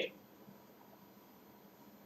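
Near silence: faint room tone, after the tail of a man's spoken word at the very start.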